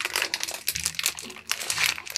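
Clear plastic bag around a compressed foam pillow crinkling as hands grip it and lift it off the table, in a dense run of irregular crackles.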